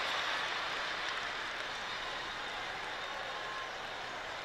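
Large audience applauding, a steady, even wash of clapping that eases off slightly.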